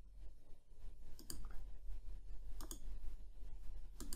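Computer mouse clicks: two sharp ones about a second and a half apart, with a few fainter ticks, over a faint steady low electrical hum.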